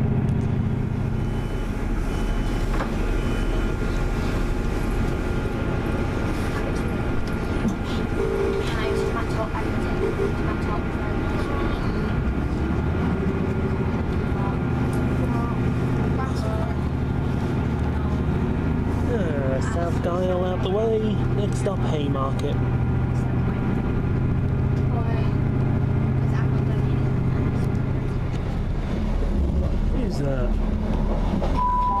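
Interior of a ScotRail Class 158 diesel multiple unit running at speed: steady underfloor diesel engine drone and wheel-on-rail rumble, the engine note shifting about midway. Voices talk in the carriage over the running noise.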